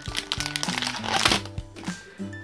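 Foil wrapper of a Pokémon TCG booster pack crinkling in the hands as the cards are pulled out of it, mostly in the first second and a half, with background music underneath.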